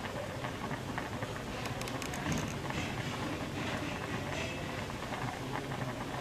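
Fish stew bubbling at a boil in a pot, a steady seething with many small pops.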